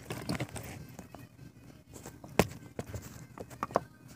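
Handling noise from the recording camera: rustling and several sharp knocks and clicks, the loudest about two and a half seconds in, with a quick run of smaller clicks near the end.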